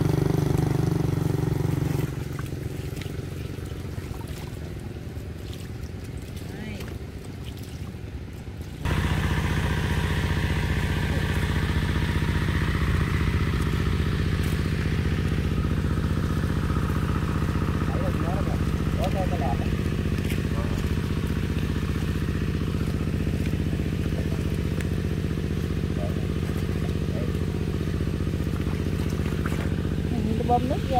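A motorbike engine running as the bike rides off along a muddy track, dropping in level about two seconds in. After a sudden change about nine seconds in, a small engine runs at a steady, even speed.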